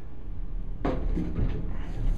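A heavy steel tool chest rolling on 55D-durometer caster wheels across a concrete floor, a low steady rumble, with a single sharp knock about a second in.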